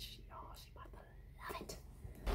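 A woman's faint whispering, very quiet.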